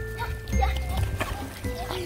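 Background music with steady held notes, with faint children's voices over it.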